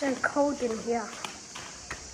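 Brief, indistinct human voices with falling pitch in the first second, too faint for words to be made out, over a steady faint hiss with a couple of small clicks.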